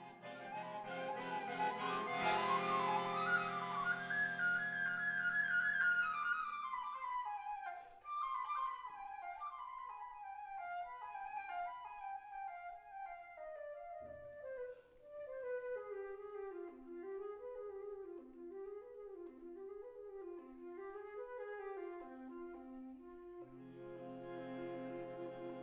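Concert flute playing a klezmer melody over sustained accordion chords. After about seven seconds the chords drop out, leaving the flute on its own in a slow descending line of repeated rising-and-falling figures. The accordion chords come back in just before the end.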